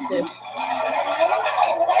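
Only speech: voices talking, with a faint steady hum beneath.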